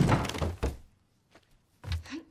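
Cartoon sound effects of a loud thud and clatter at the start that dies away within a second. After a short pause comes a single knock near the end, as a wooden wardrobe door is pushed shut.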